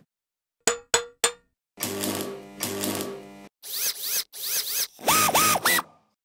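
Electronic sound effects for an animated logo. About a second in come three quick clicks, followed by a buzzing tone sounded twice. Then come three whooshing sweeps with arcing whistles, and near the end three short bouncing bloops that rise and fall in pitch.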